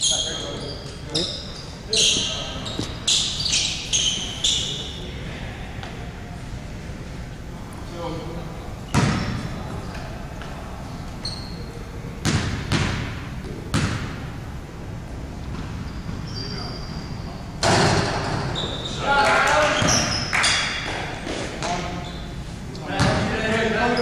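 Sneakers squeaking on a hardwood gym floor in the first few seconds, then a few basketball bounces, all echoing in a large gym. Indistinct voices come in near the end.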